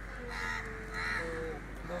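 A crow cawing twice, two harsh calls about half a second apart.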